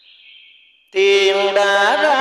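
Vietnamese tân cổ (cải lương) singing: after a faint hiss, a singer's voice comes in loudly about a second in, holding a long note with wavering, bending pitch.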